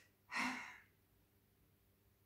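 A woman's single audible sigh, one breathy out-breath about half a second in, followed by near silence.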